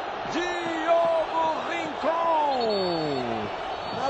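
A football commentator's drawn-out goal cry: long held vocal notes, the second sliding steadily down in pitch, over the steady roar of a stadium crowd.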